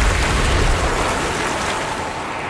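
Dramatic film sound design as a staff is plunged into river water: a deep rumble that fades away over about the first second, under a steady hiss like fizzing, churning water.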